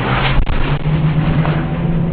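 Fireworks burning on the ground with a loud, steady rushing noise and one sharp crack about half a second in. From under a second in, a low steady hum runs beneath it.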